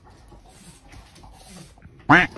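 A cat making a couple of faint, short cries past the middle, over low scattered rustling.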